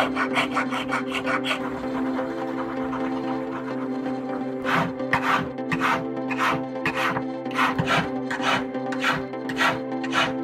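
Flat hand file rasping across a gold ring braced on a wooden bench pin. Quick short strokes come at first, then after a quieter stretch a steady rhythm of about two strokes a second from about five seconds in.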